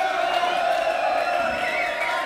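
Concert crowd cheering and shouting, many voices merging into one steady, sustained yell.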